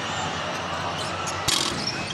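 Basketball arena ambience: the steady noise of the crowd in the hall, with a single sharp knock of the basketball bouncing on the hardwood court about one and a half seconds in.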